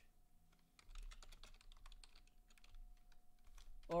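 Computer keyboard typing: a faint, irregular run of quick key clicks.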